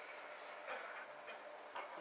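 Quiet room tone with a few faint light clicks and a soft rustle.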